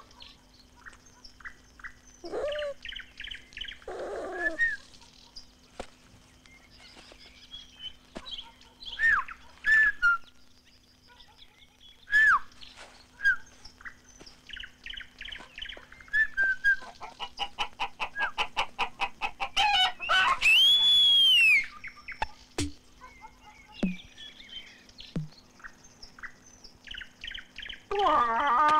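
Bird calls on a cartoon soundtrack: scattered short chirps and gliding whistles, a fast run of evenly repeated chirps past the middle, and one long whistle that rises and falls about three-quarters through.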